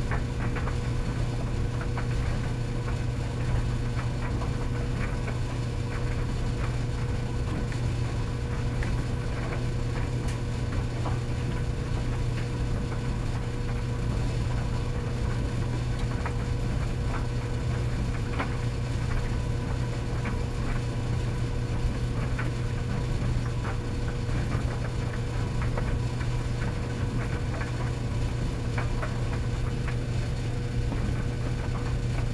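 Commercial coin-op tumble dryer running: a steady low hum with a faint higher tone above it and scattered light ticks.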